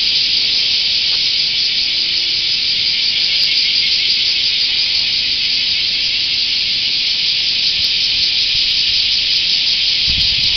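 Chorus of cicadas in the trees: a steady, shrill, unbroken drone.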